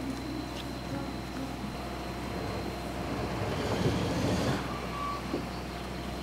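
Steady low engine hum of motor traffic, with a swell of passing-vehicle noise about four seconds in.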